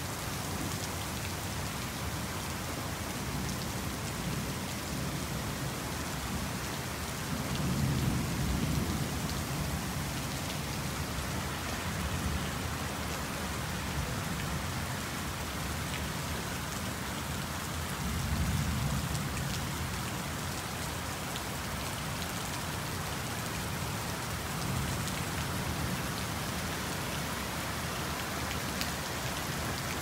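Heavy rain pouring steadily onto garden beds of wood-chip mulch, plants and grass. Low rumbles of thunder swell up about eight seconds in and again just before halfway through the second half.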